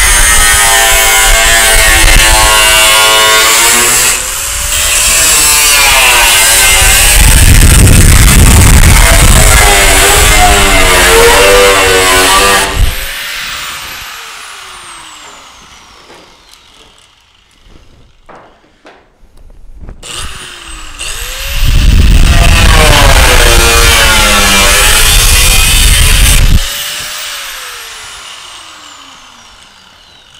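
Angle grinder grinding down MIG welds on an 18-gauge sheet-metal panel, in two runs of about thirteen and five seconds. The motor's pitch dips and wavers under load, and each run ends in a falling whine as the motor winds down. A few faint clicks come between the runs.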